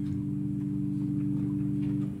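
A musical instrument holding a low chord, several notes sustained steadily.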